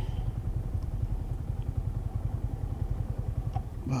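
Motorcycle engine idling with a fast, even low pulse while the bike stands still.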